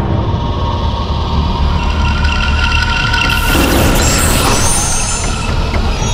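Dramatic background music over a heavy low rumble, with a hissing whoosh sound effect from about three and a half seconds in until shortly before the end.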